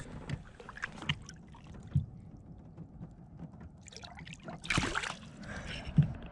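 Small knocks and bumps on an aluminum boat's hull with water sounds as a smallmouth bass is lowered over the side and let go. A louder rush of noise comes about five seconds in.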